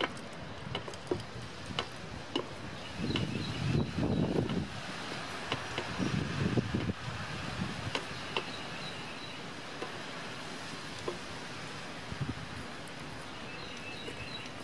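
Light scattered clicks of steel tongs against a metal can as a hot tool-steel bar is moved around in quench oil, over steady faint outdoor background noise. A couple of low swells of noise come and go in the first half.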